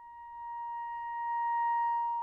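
Solo clarinet holding one long high note unaccompanied, swelling steadily louder.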